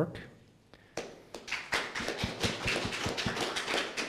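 A small audience applauding, starting about a second in and going on as a steady patter of hand claps.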